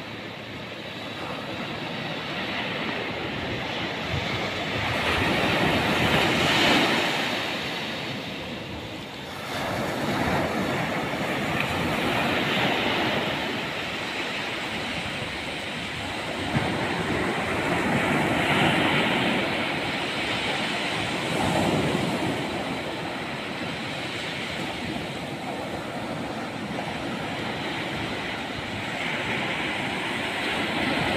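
Surf breaking on a sandy beach: a steady rush of waves that swells and eases every few seconds.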